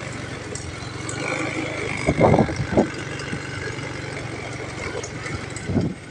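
Motorcycle engine running at low speed while riding along. There are brief louder noises about two seconds in and again near the end.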